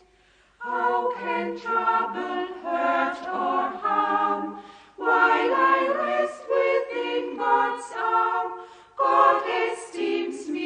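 A choir singing a hymn without accompaniment, in phrases of a few seconds with short breaths between them.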